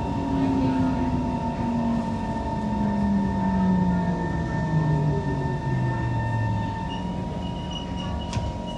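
Kawasaki C151 metro train's traction motors whining steadily down in pitch as the train brakes along the platform. The falling tone dies away about seven seconds in as the train comes to a stop, over a steady higher hum and the rumble of the car.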